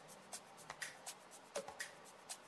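Faint, irregular little clicks and crackles of fingernails picking dried peel-off lip tint film off the lips.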